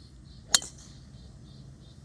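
Golf driver striking a teed-up ball: a single sharp, metallic click about half a second in.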